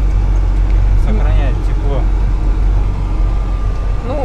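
Ural M truck's YaMZ-536 diesel engine running, heard inside the cab while driving as a steady low drone.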